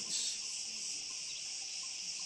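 Steady, high-pitched chorus of insects shrilling without a break.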